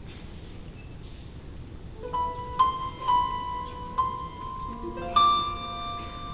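Piano introduction beginning about two seconds in: single high notes struck one after another and left to ring, with lower notes joining near the end. Before the first note there is only faint room noise.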